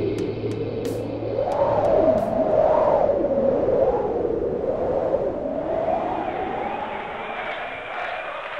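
Electronic sound effect in an experimental soundtrack: a warbling tone that sweeps up and down about once a second over a steady drone.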